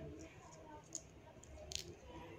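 Faint handling sounds of pink thread being wound by hand around a small folded paper: soft rustling with a small click about a second in and a brief rustle near the end.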